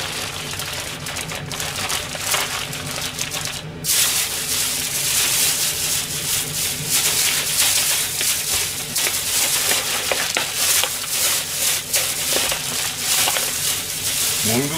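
Newspaper being crumpled and folded around kitchen scraps, then a thin plastic bag rustling and crinkling as it is handled, louder and denser from about four seconds in.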